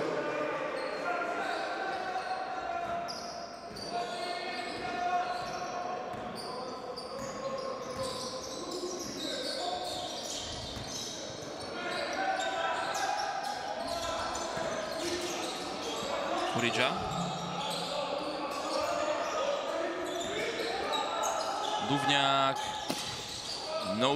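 Basketball dribbling on a hardwood court in a large indoor hall, with players' and spectators' voices calling out throughout and a few sharp knocks in the second half.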